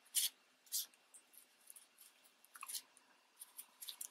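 Crinkled momigami paper being handled and shaped by hand, giving a few short, dry rustles and crackles.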